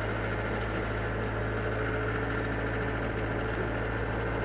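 Steady engine and road noise of a pickup truck driving along, with a constant low hum, heard from the open truck bed.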